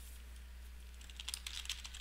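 Keystrokes on a computer keyboard: a quick run of key clicks in the second half, over a steady low hum.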